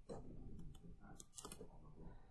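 A few faint clicks of a computer mouse over quiet room tone, as the cursor moves to a Photoshop document tab.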